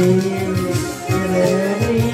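Electronic arranger keyboard playing a Turkmen tune live: a melody of held notes over a rhythmic bass accompaniment.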